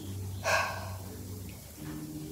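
A woman's single breathy exhale, a tired sigh about half a second in.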